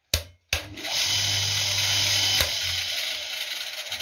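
A Chicago Forge 150 mm bench grinder is switched on about half a second in, with a click. Its electric motor comes up to speed within about half a second and then runs steadily, a low hum under a high whine from the spinning wheels.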